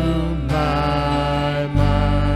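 Live worship band playing a slow song, with voices singing over acoustic guitar, bass guitar and keyboard. A held sung note ends about half a second in and a new line begins, and the bass moves to a new note near the end.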